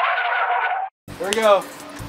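A boy's shout, thin and tinny as if filtered, lasting about a second and cut off abruptly; after a short gap, a person calls out briefly.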